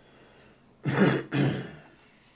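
A man clearing his throat twice in quick succession, about a second in.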